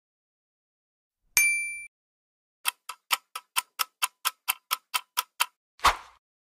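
A short bright chime, then a clock-tick countdown sound effect, about four to five ticks a second for three seconds, as a quiz timer. A single heavier thump comes just before the end.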